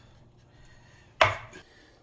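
A single sharp chop about a second in: a chef's knife cutting through soft avocado and striking a wooden cutting board.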